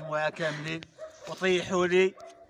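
Men's raised voices laughing and calling out together in short, repeated loud calls.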